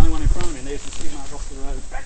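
Men's voices talking, over a steady low rumble.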